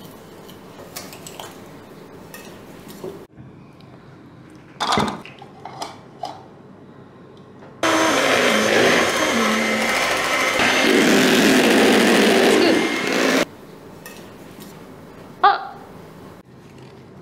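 Electric hand mixer beating egg whites in a plastic jug: the motor and beaters run loudly for about five seconds in the second half, switching on and off abruptly, with the sound shifting partway through. A few light knocks come before it.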